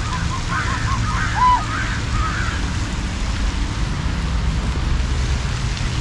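A few soft calls from domestic geese and ducks in the first couple of seconds, the clearest a short arched call about a second and a half in. Under them runs a steady rushing noise with a low rumble.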